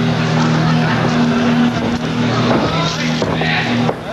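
Arena crowd noise, many voices mixed together, over a steady low droning tone that cuts in and out every second or so.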